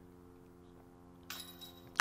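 A faint metallic jingle near the end as a putted disc strikes the chains of a disc golf basket.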